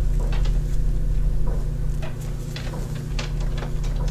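Pliers pinching down a splice of thin thermostat wires, giving faint scattered clicks and rustles over a steady low hum.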